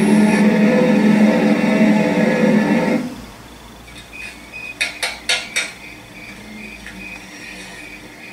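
Music from a TV episode's soundtrack, loud for about three seconds, then cut off. The scene goes quiet, with four sharp metallic clicks in quick succession about five seconds in and a faint, broken high tone behind them.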